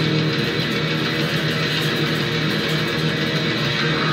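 Stratocaster-style electric guitar played through an amplifier in a continuous neoclassical metal passage.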